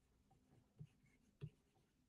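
Near silence with the faint taps and light strokes of a pen writing a word by hand, a few soft ticks, the clearest near the middle and about a second and a half in.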